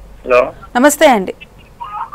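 A person's voice in a few short utterances, its pitch sliding up and down.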